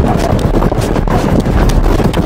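A scuffle on pavement: rapid, irregular footsteps, shuffling and knocks as several men struggle with someone and force him into a van.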